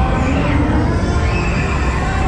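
Loud, steady rumble of wind buffeting the microphone of a rider on a moving fairground thrill ride, with fairground music and a high held voice-like tone over it.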